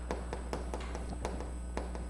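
Chalk writing on a chalkboard: a run of light, irregular taps and short strokes as characters are written, over a low steady hum.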